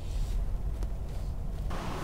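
Low, steady rumble of a 2021 Mercedes-Benz S580 moving slowly.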